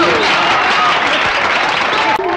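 Audience applause filling the pause after a film song's final note, steady and dense.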